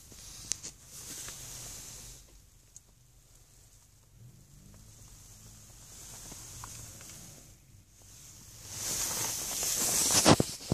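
Quiet car interior: a soft hiss with faint rustling and a few light clicks from the phone being handled.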